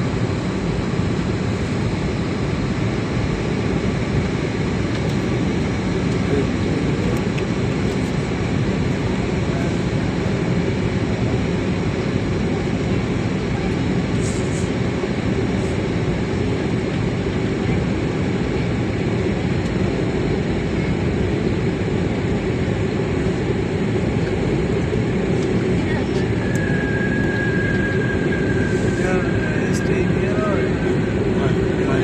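Steady drone of aircraft engines and rushing air heard from inside the cabin during flight. A thin steady tone comes in near the end.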